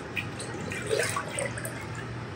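Ginger-mint simple syrup pouring from a small plastic cup into a glass pitcher, a light trickle and splash of liquid.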